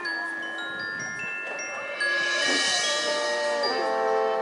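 Marching band front ensemble playing a soft mallet passage: struck notes at many pitches ring on and overlap, like vibraphone and chimes. A cymbal-like wash swells in about halfway through and fades.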